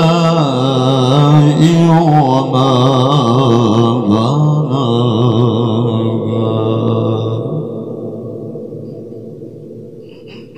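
A male qari reciting the Quran in the melodic, ornamented style into a handheld microphone over a PA: one long held phrase with wavering, embellished pitch. The voice ends about seven and a half seconds in and the sound dies away over the last couple of seconds.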